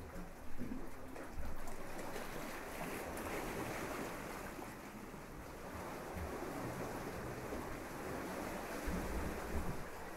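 Small waves breaking and washing up a sandy beach in a steady wash of surf, with wind gusting on the microphone now and then.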